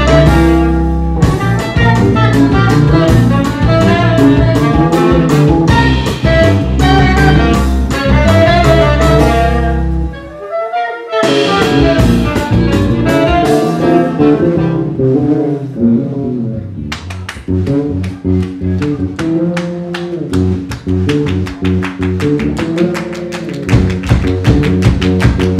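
Live band playing an instrumental jazz-style tune: saxophones over bass guitar and drums. About ten seconds in the band breaks off for a moment and then picks up again more sparsely, with the drums coming back in strongly later on.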